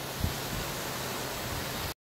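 Steady hiss of a low-pressure soft-wash spray stream from a hand-held nozzle wetting clay barrel roof tiles, with a faint low hum underneath. A brief low thump comes shortly after the start, and the sound cuts off abruptly at the end.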